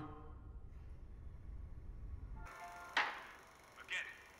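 Soundtrack of a TV drama playing back: a low steady rumble that cuts off about two and a half seconds in, then a sudden sharp hit with a brief ringing tone, and a smaller sharp hit near the end.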